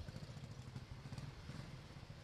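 Faint, steady low engine hum of a motor scooter in the street.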